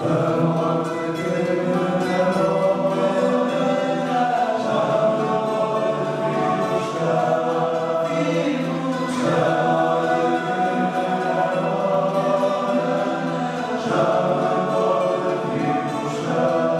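Male tuna choir singing together, accompanied by rhythmically strummed guitars and mandolins.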